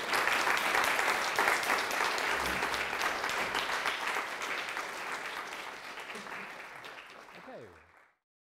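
Audience applauding: a dense clatter of many hands clapping at once. It is loudest at the start, fades gradually, and cuts off abruptly at the very end.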